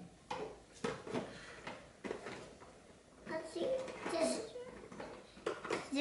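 Light clicks and knocks of felt-tip markers being picked up, tapped and set down against cardboard, several close together in the first two seconds and a few more near the end. A child's quiet murmuring can be heard in the middle.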